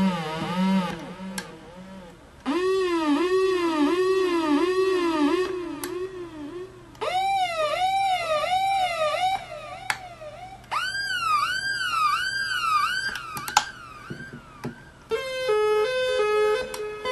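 SE-2 New Roots Type reggae dub siren machine sounding in separate bursts of a repeating swooping tone, about two swoops a second, each burst pitched higher than the last. Near the end it switches to a rapid stepping back and forth between two pitches.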